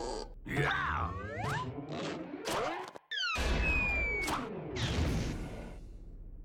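Cartoon soundtrack of music and slapstick sound effects: crashes and whacks, sliding whistle-like glides in pitch, and grunts. It breaks off abruptly for a moment about three seconds in, then starts again.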